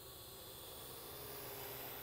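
Faint steady hiss of background noise, swelling slightly around the middle.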